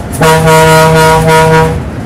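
Vehicle horn sounding one long, steady blast of about a second and a half, heard from inside a bus in city traffic.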